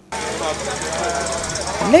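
Construction-site ambience: a steady wash of machinery noise with people's voices in the background, starting suddenly.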